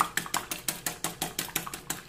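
Metal wire whisk beating an egg in a glass bowl, its wires ticking against the glass in a quick, even rhythm of about six strokes a second.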